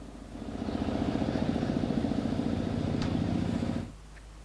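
Small motorcycle engine running as it rides toward the listener, growing louder over the first second into a steady, rapid pulsing, then cut off abruptly just before the end.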